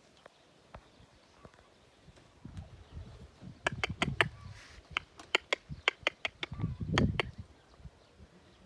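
A mare and foal shifting about in a wooden horse trailer: low knocks of hooves on the floorboards, with a quick, uneven run of about a dozen sharp clicks in the middle.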